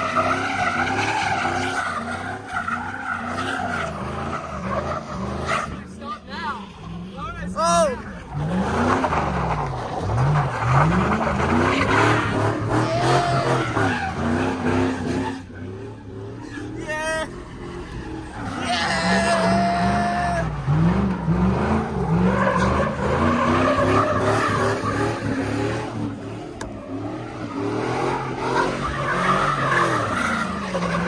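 A vehicle's engine revving up and down again and again as its tyres spin and slide on snow and ice in donuts, with brief squealing chirps from the tyres.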